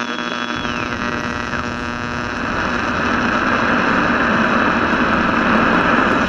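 Loud, steady electrical hum and hiss made of many layered steady tones, with a tone that slides down in two steps during the first second and a half.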